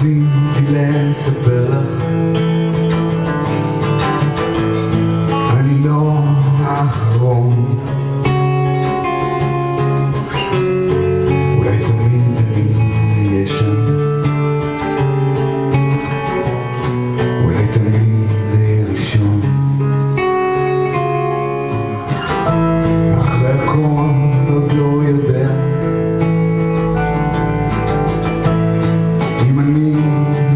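Live band playing a rock-folk song led by a strummed acoustic guitar, with electric guitar, keyboard and drums.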